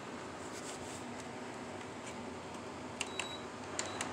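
Buttons on a floor fan's control panel pressed twice, about three seconds in and again near the end. Each press gives a sharp click followed by a short, high electronic beep as the fan is switched on and set. A steady low hiss runs underneath.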